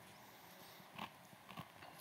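Near silence: quiet room tone with two faint short taps, one about a second in and one near the end.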